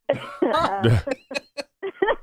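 Several people laughing: a loud burst over the first second that breaks into shorter chuckles.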